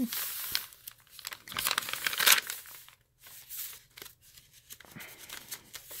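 Coffee-stained paper pages of a handmade journal being turned and handled, rustling and crinkling in bursts, loudest about two seconds in.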